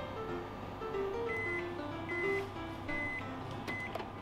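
Light plucked-string background music, over which an electric oven's timer beeps four times at an even pace, one steady high tone each time, signalling that the baking is done. A sharp click comes just before the end.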